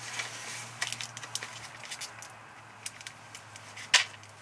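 A paper burger wrapper crinkling and crackling lightly in the hand as burger patties are shaken out of it into a dog bowl of kibble, with a sharper crackle near the end. A low steady hum runs underneath.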